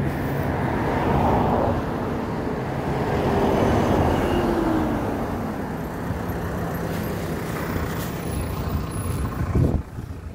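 Street traffic: cars driving past with engine hum and tyre noise, swelling louder about a second and about four seconds in, the second pass with an engine note falling in pitch as it goes by. A brief louder burst comes just before the end.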